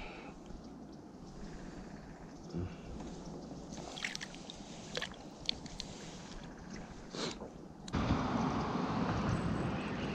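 Quiet water lapping and sloshing against a kayak hull, with a few light handling clicks and knocks. About eight seconds in, a louder, steady rush of noise cuts in suddenly.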